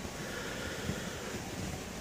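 Steady whir of a running desktop computer's cooling fans and its bare ATX power supply's fan, with a couple of faint clicks.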